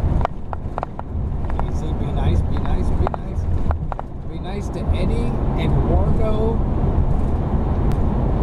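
Steady low road and engine rumble heard inside a vehicle cabin at highway speed, with a few scattered clicks in the first half.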